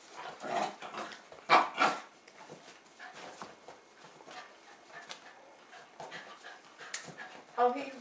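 Jack Russell terrier making two short, excited begging noises about half a second and a second and a half in, followed by quieter scattered clicks and shuffling.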